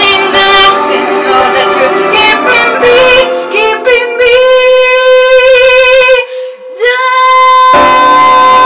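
A woman singing a slow melody into a microphone. About four seconds in she holds one long, wavering note, breaks off briefly, then slides up into another held note near the end.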